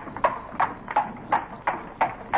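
Even, regular clip-clop knocks, about two or three a second, each with a short ring.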